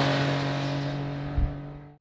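2022 Triumph Speed Triple 1200 RS's 1160 cc three-cylinder engine running at steady revs as the motorcycle rides away through a corner, fading as it goes. There is a brief low thump about one and a half seconds in.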